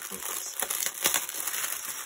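Clear plastic packaging crinkling and crackling as a bag of small drill bags is handled and turned.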